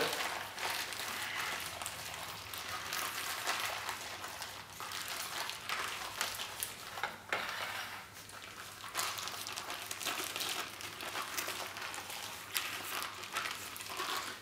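A plastic ziplock bag holding a milk mixture being handled and squeezed, crinkling and rustling as a steady run of small crackles.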